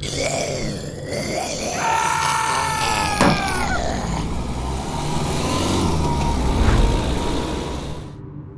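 A car sound effect on a stop-motion soundtrack: dense, noisy vehicle sound with a high squeal from about two seconds in, which ends in a sharp knock a little after three seconds. The sound cuts off suddenly at the end.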